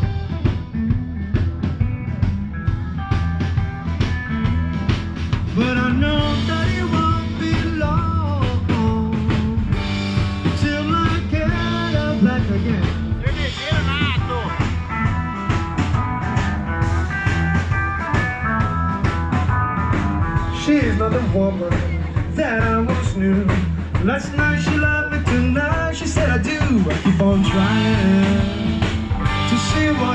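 Live rock band playing on an outdoor stage: electric guitars, bass and drums.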